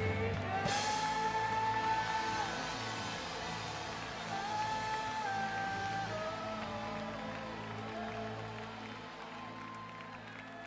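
Slow worship music with long held notes that step from pitch to pitch over a steady low drone, growing quieter toward the end.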